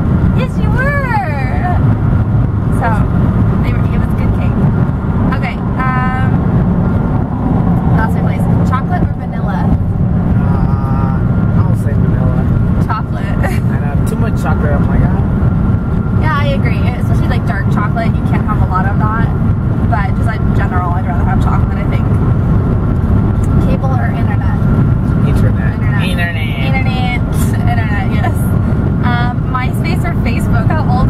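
Steady low road and engine rumble inside a moving car's cabin, with a man's and a woman's voices laughing and calling out over it at intervals.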